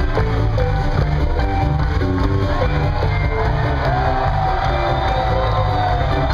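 A jam band playing live, mid-song: an instrumental passage with electric guitar, bass and drums over a steady rhythm, with a long held note about two thirds of the way through.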